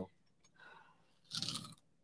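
Biting into and chewing crispy fried catfish: a faint crunch, then a louder crunching bite about a second and a half in.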